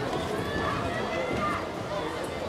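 Indistinct chatter of several people talking at once, with no single voice clear, over a steady outdoor background noise.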